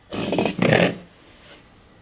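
Two short, loud animal growls, one right after the other in the first second.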